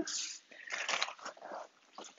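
Rustling and crinkling of a rubber exercise band being gathered in the hands, with the body shifting on a foam exercise mat, in irregular bursts that fade after about a second and a half.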